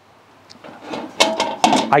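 Metal drip pan (water pan) scraping and clanking as it is set down inside the steel body of a charcoal bullet smoker. It starts about half a second in, with a run of sharp knocks and a short metallic ring in the second half.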